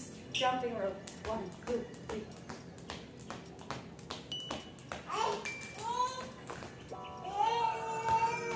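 A skipping rope strikes a tiled patio floor in a steady rhythm of sharp clicks as it turns under the jumper. A toddler's high-pitched babbling calls come in between the clicks, and again near the end.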